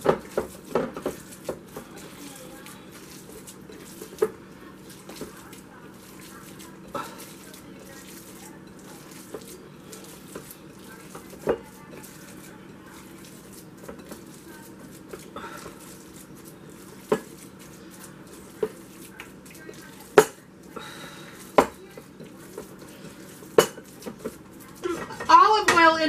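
Hands tossing and mixing raw ground beef and pork in a glass bowl, with scattered sharp clicks against the glass every few seconds over a faint steady hum.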